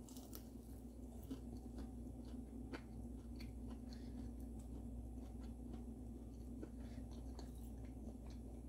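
Faint chewing of a crisp breaded Gardein plant-based chick'n tender, with small crunches scattered irregularly throughout, over a low steady background hum.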